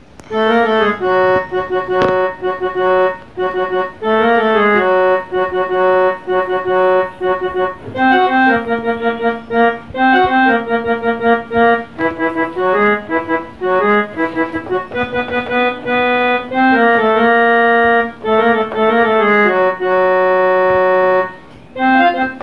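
Small portable electronic keyboard playing a two-handed tune, melody over chords, its notes held at an even level rather than dying away. There is a short break shortly before the end.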